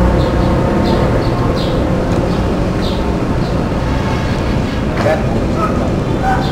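Steady low rumble of outdoor background noise on a camcorder microphone, with faint, short high-pitched chirps recurring throughout.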